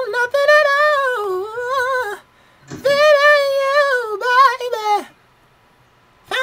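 A high singing voice vocalising without words: two long melodic phrases with vibrato and sliding notes, separated by a short breath, ending about a second before the end.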